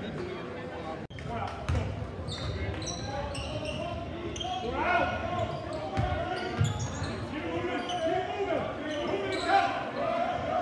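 Gym crowd talking and calling out over a basketball game, with a basketball bouncing on the hardwood court at intervals, echoing in the large hall. A brief dropout about a second in.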